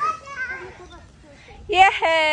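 Children playing: a short voiced call at the start and faint chatter, then a loud, high-pitched drawn-out shout rising in pitch near the end.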